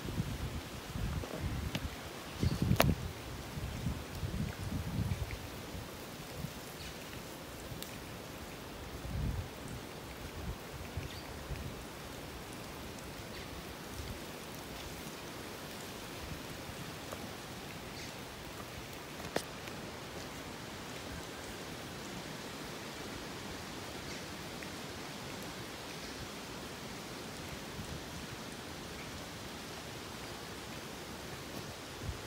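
Steady hiss of boiling geothermal pools and steam vents (fumaroles). Low rumbles come and go in the first five seconds and again near ten seconds, with a sharp click about three seconds in and another a little before twenty seconds.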